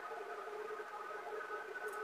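Faint steady background hum, room tone, in a pause between spoken sentences.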